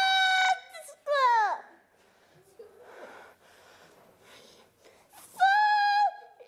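A stage actor's voice: a loud, held high shriek that cuts off about half a second in, then a short falling wail. After a quiet stretch comes another held high cry near the end.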